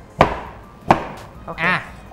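A cleaver chopping through purple sweet potato onto a wooden cutting board: two sharp chops a little under a second apart.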